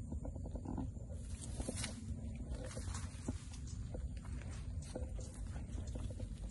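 Grass and wet undergrowth rustling and crackling in short irregular bursts as someone pushes through it, over a steady low rumble of handling or wind.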